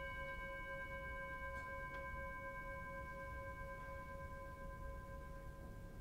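A metal bowl bell rings on after being struck, a steady chord of several clear tones that slowly fades out near the end. It is rung as the altar bell at the elevation of the consecrated bread in the Eucharist.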